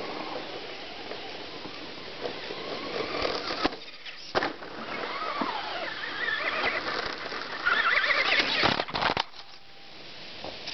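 Traxxas Slash RC truck's stock 12-turn brushed electric motor whining, its pitch rising and falling with the throttle and loudest near the end. There are a few sharp knocks about four seconds in and a short clatter of impacts about nine seconds in.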